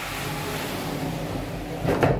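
A slide-in pocket door rolling along its track as it is pulled shut, a steady rumbling hiss, ending with a knock as the door meets the frame just before the end.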